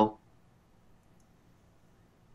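The tail of a man's spoken word, then near silence: a pause in speech with only faint room tone.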